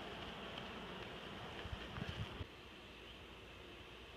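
Honeybees buzzing around an opened log hive, a faint steady hum, with a few soft handling bumps; the hum drops a little about two and a half seconds in.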